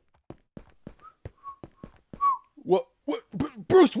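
A man casually whistling a few short notes over light taps in an even rhythm, about four a second. Near the end a voice breaks in with several sliding, rising-and-falling cries.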